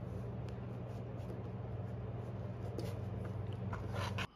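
A steady low electrical hum with a few faint light clicks, from a small plastic three-pin servo plug being worked loose from a hobby electronic speed controller.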